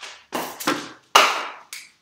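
A few sharp taps and knocks, about four, from a whiteboard marker being handled against the board. The loudest comes a little over a second in.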